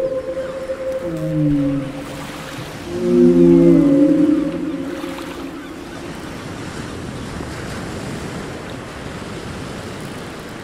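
A series of low whale calls with overtones, some sliding in pitch and loudest three to four seconds in. After about five seconds they give way to a steady wash of ocean noise.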